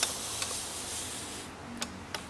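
Ouija board planchette sliding over the board, a faint steady scrape with a sharp click at the start and a few lighter clicks later.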